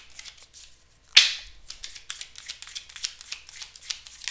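A deck of cards being shuffled by hand: one loud riffling swish about a second in, then a steady run of quick, soft card clicks.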